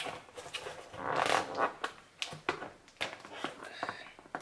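A package being opened by hand: a longer tearing, rustling sound about a second in, then several short crinkles and clicks as the packaging is handled.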